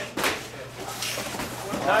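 A single sharp smack of a gloved strike landing in Muay Thai sparring about a quarter second in, followed by quiet gym room sound.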